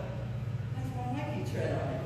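Indistinct voice sounds in short broken phrases over a steady low hum.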